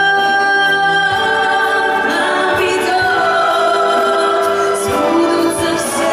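A woman singing a Russian romance live with a symphony orchestra, in long held notes.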